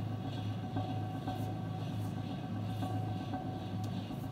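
A steady low machinery-like hum with a faint, regular pulse and a thin higher tone above it.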